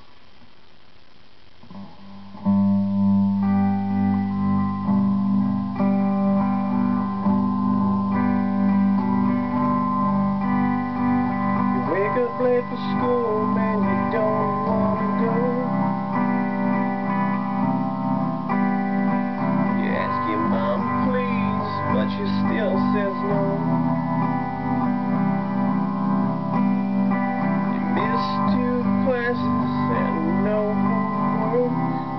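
Electric guitar begins about two and a half seconds in, holding slow, ringing chords of the song's verse, G major and Cadd9, that change every couple of seconds. A man's deep voice sings over it in phrases from about twelve seconds in.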